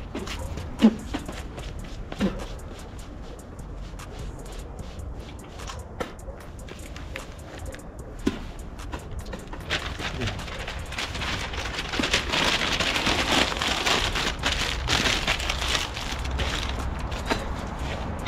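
Newspaper rustling and crinkling as a sheet is handled, starting about ten seconds in and growing louder. Before it come scattered light clicks and a few short low sounds.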